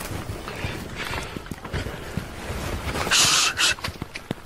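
Rustling and shuffling of people moving about in a forest, with low rumbles of movement near the microphone and a short hissing rustle about three seconds in.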